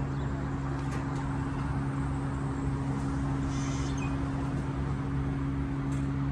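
A steady low hum runs throughout, with a few faint clicks about a second in and a short hiss about three and a half seconds in.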